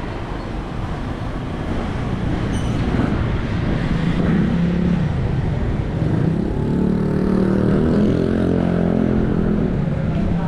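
Street traffic with a motor vehicle engine running close by, its low engine note growing louder a few seconds in and again for the second half.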